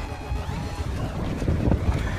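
Wind buffeting the microphone aboard a small boat: an uneven, gusty low rumble.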